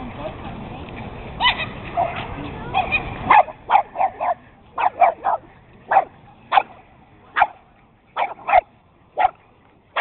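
Dogs barking and yipping in play while they wrestle: a run of short, sharp barks, sometimes two or three in quick succession, starting about a third of the way in. Before that, a noisy background with voices.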